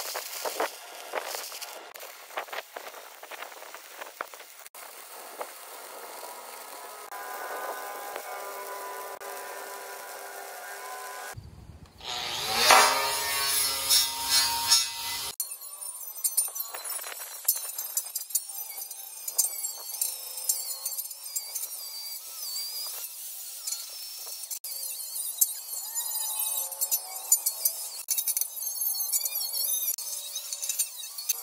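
Electric arc welding crackling on a steel I-beam splice at first, then an angle grinder working the steel beam, its pitch wavering as it bites, with a louder stretch a little before the middle.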